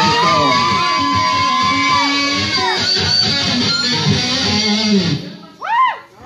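Distorted electric guitar playing a short solo lick: a note bent up and held for about two and a half seconds, then a run of quicker notes that stops about five seconds in.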